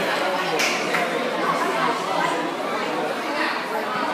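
Indistinct chatter of several people talking at once, with two brief sharp sounds about half a second and a second in.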